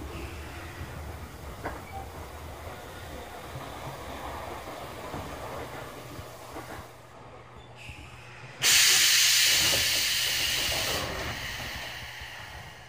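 Sotetsu 7000 series electric train at a station stop: a steady low hum from the car's equipment, then, about two-thirds of the way in, a sudden loud burst of compressed-air hiss that fades away over two or three seconds.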